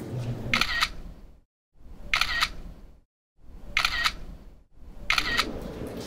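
A camera-shutter click sound effect, repeated four times about one and a half seconds apart, with dead-silent gaps between some of the clicks.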